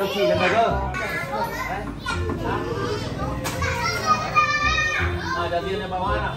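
Children's and adults' excited voices chattering and calling out over background music with a steady low beat, with a high-pitched child's cry about four and a half seconds in.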